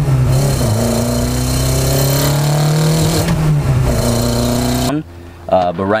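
1992 Honda Accord's engine on individual throttle bodies accelerating, heard from inside the cabin: the pitch climbs, drops at a gear change about three seconds in, then climbs again. It cuts off abruptly about five seconds in.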